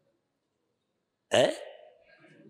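A pause in a man's speech, then about a second and a half in he says a single short word with a rising, questioning pitch, which trails off.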